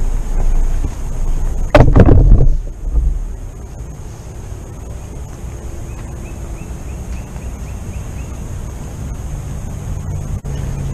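Rumbling wind and handling noise on a moving gun-mounted camera, then a loud burst of clattering knocks about two seconds in as the rifle and camera are set down on the tiled patio. After that comes a quieter steady outdoor background with faint high chirping.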